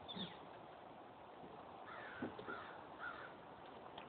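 A bird calling: a brief high call at the start, then three short calls about half a second apart.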